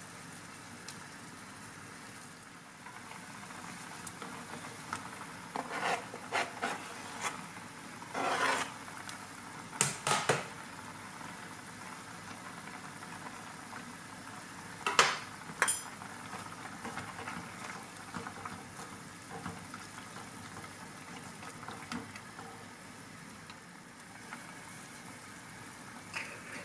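A pot of Korean spicy chicken stew bubbling quietly on a gas stove, with a handful of short knocks and clatters as potato chunks and minced garlic are dropped into the pot. The clatters come in two clusters, about a quarter and about halfway in.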